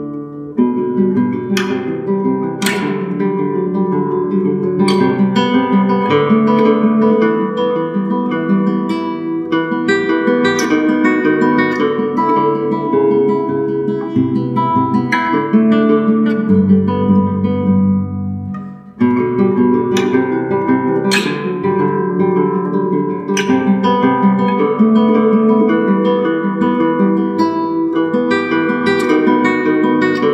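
Solo classical guitar playing a fingerpicked piece, with a low note held a little past halfway and a brief break before the plucked notes resume.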